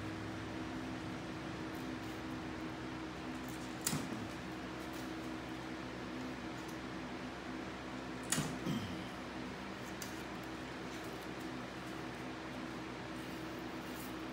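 Steady machine hum in a small room, with two brief scraping sounds, about four seconds in and again about eight seconds in, from a hawkbill knife stripping bark off a green cedar stick.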